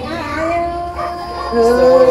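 Solo voice singing a northwest Vietnamese Tai (Thái) folk love song in the giao duyên style, drawing out long held notes on the sung vocable "oi". The singing grows louder and fuller about one and a half seconds in.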